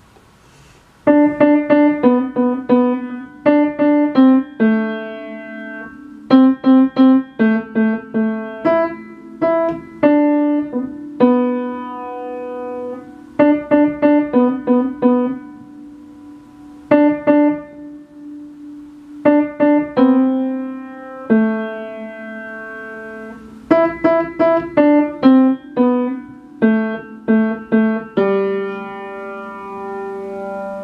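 A beginner student playing a simple solo piece on the piano: phrases of quick, evenly struck notes with short pauses between them, starting about a second in and ending on a held chord near the end.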